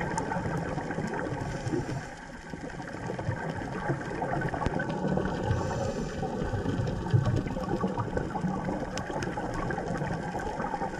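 Underwater ambience: a muffled, fluctuating low rush of water against the camera, with a few sharp clicks scattered through it.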